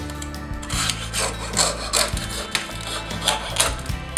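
Jeweller's saw blade cutting through a cuttlefish bone, a run of quick rasping strokes about two to three a second that start just under a second in.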